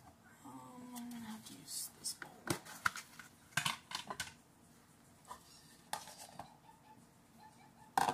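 Plastic kitchen bowls clattering as one is pulled from a cupboard: a handful of sharp knocks spread over several seconds.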